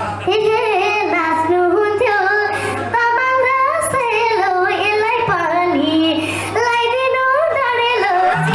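A young girl singing a Nepali folk melody into a microphone, amplified through a PA, her voice bending and ornamenting between notes, over a steady low drone.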